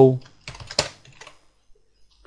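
Computer keyboard typing: a short run of keystrokes about half a second in, followed by a few fainter key clicks.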